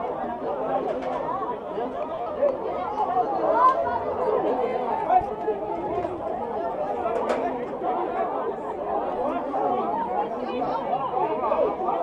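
Chatter of many people talking over one another at once at an amateur football pitch, a steady babble with no single voice standing out.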